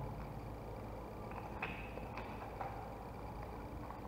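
Faint clicks and handling noise of a plastic plug's terminal block and wires being worked by hand, with a few light ticks in the middle, over low room noise.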